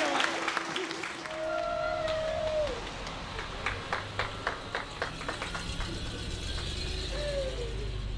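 Scattered clapping and a few calls from a small group, over the low steady rumble of a vintage car's engine as the car pulls away.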